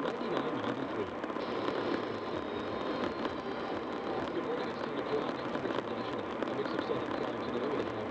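Steady road and engine noise inside a car cruising on an expressway, with a faint voice underneath.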